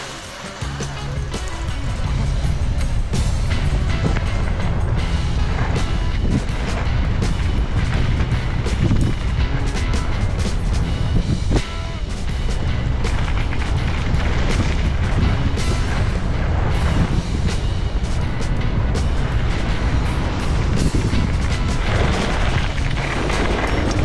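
Wind buffeting the microphone and skis scraping and hissing over packed snow on a downhill run, steady for most of the run with a brief dip about halfway.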